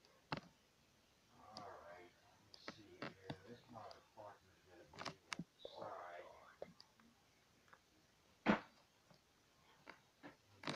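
A person talking quietly in a hushed, whispered voice, in a few short stretches, with scattered sharp clicks and knocks. A single sharp knock about eight and a half seconds in is the loudest sound.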